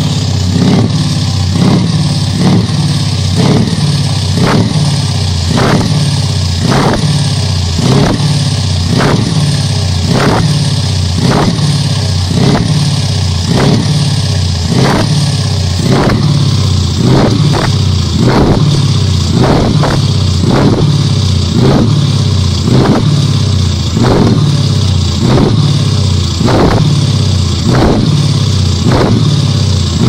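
Mercedes-Benz Actros V8 diesel truck engine revved over and over in short throttle blips, about one a second, out of a side exit exhaust pipe, with a steady engine note beneath the blips.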